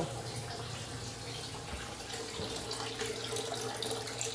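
Steady rushing noise, like water running, over a low steady hum, with a faint thin tone entering about halfway through.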